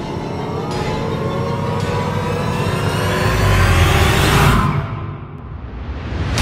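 Suspense film score: a riser whose many layered tones climb in pitch and swell in loudness for about four and a half seconds, with a deep rumble building under the peak, then a sudden drop away.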